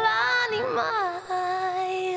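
A woman singing a line of an Italian pop song over its backing track, ending on a long held note.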